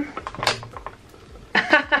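A couple of soft clicks and handling noise, then a quiet stretch, and a woman laughing near the end.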